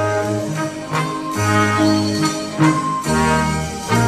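A stage band led by brass plays an instrumental passage of held chords that change every second or so, with a few sharp accents.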